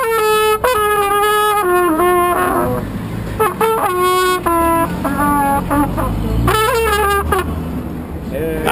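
Trumpet played solo, a slow tune of held notes with short slides between some of them, breaking off briefly about three seconds in. It closes with a quick run of notes and stops just before the end.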